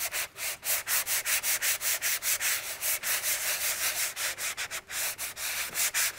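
A sanding block rubbed quickly back and forth over a chalk-painted tray, about four to five scratchy strokes a second, smoothing away the gritty roughness of the dried first coat of chalk paint.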